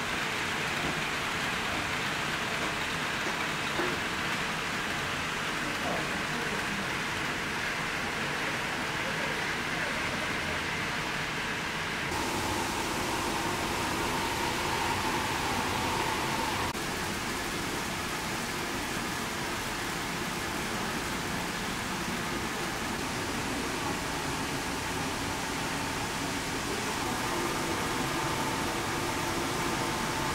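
HO-gauge model trains running on layout track: a steady rolling hiss of wheels on rail with a faint motor hum. The sound shifts abruptly about twelve seconds in.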